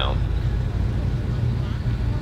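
Steady low rumble of background noise with no clear single source.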